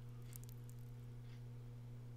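Quiet room tone: a faint steady hum, with a few faint ticks in the first half second.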